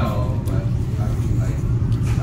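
Faint, broken voices over a steady low rumble.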